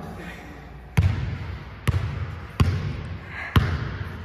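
Basketball being dribbled on a hardwood gym floor: four bounces a little under a second apart, the first about a second in, each with a short echo.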